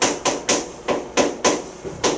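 Marker tip knocking against a hard writing board as numbers are written: about seven sharp, quick taps, irregularly spaced.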